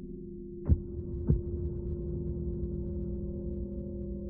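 Video game intro soundtrack: a steady low drone of several held tones, with two deep thumps a little over half a second apart a little under a second in.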